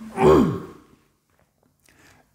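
A man's sigh, voiced and falling steadily in pitch, lasting about half a second at the start.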